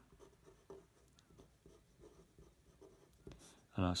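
Pen writing on paper, faint irregular scratching strokes as a short word is written out by hand.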